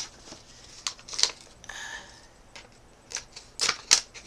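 Paper envelope and packaging tape being handled and pulled open: several short sharp crinkles and rips, with one longer scratchy rip a little under two seconds in.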